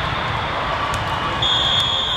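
A referee's whistle blown once: a steady high-pitched tone lasting just under a second, starting about one and a half seconds in, over the constant hubbub of a large tournament hall.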